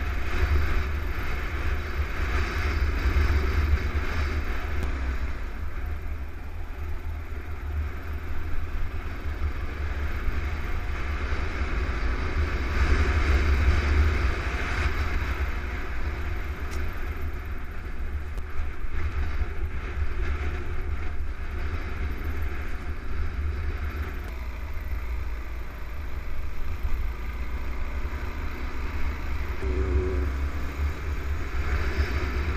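Kawasaki KLR650 single-cylinder four-stroke engine running as the bike rides along a dirt trail, mixed with heavy wind rumble on the microphone. The level swells and eases with the riding.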